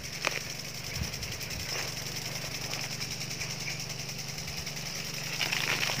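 A small engine or motor running steadily with a low, even hum and a faint hiss above it, with one light click just after the start.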